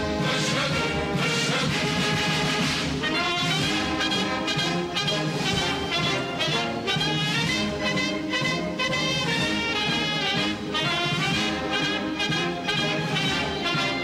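Instrumental background music led by brass, with a steady rhythm of changing chords.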